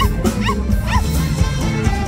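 Live luk thung band playing an instrumental passage, with a lead part of short bent notes, about four a second, that yelp like a dog and stop about a second in while the band plays on.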